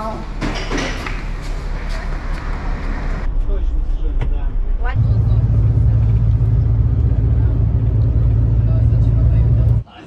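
Steady low drone of a coach bus's engine and road noise heard from inside the cabin, the loudest sound here, cutting off abruptly just before the end. Before it come a few seconds of rougher, broader noise.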